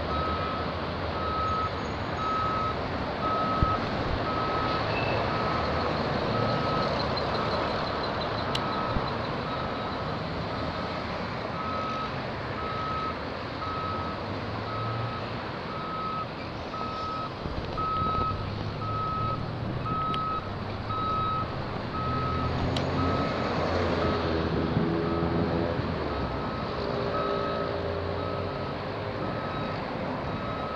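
A construction machine's back-up alarm beeping steadily on one pitch at an even pace, stopping near the end. Heavy machinery and passing road traffic run underneath.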